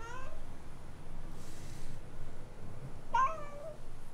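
A tabby-and-white domestic cat meowing twice: a short rising meow at the start and a second, slightly longer meow about three seconds in.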